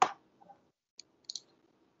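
Computer mouse clicks: a sharp click right at the start, then a few faint clicks about a second in.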